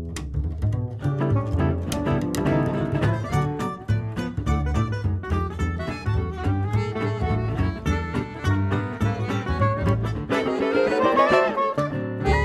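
Gypsy-jazz combo playing: plucked upright-bass notes under acoustic-guitar rhythm chords, with a rising run of notes near the end.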